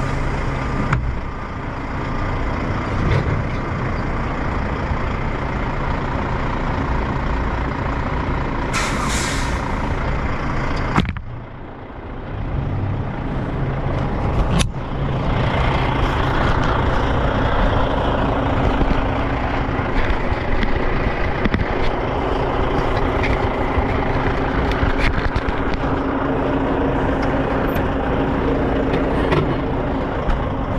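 Road-train prime mover's diesel engine running at low speed while the truck is backed under a trailer to couple it. There is a short hiss of released air about nine seconds in, a sudden knock at about eleven seconds, and a sharp knock near fifteen seconds, after which the engine is louder.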